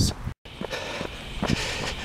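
Footsteps of a person walking on an asphalt road in sneakers, a few spaced steps over a low outdoor background. The sound cuts out briefly just after the start.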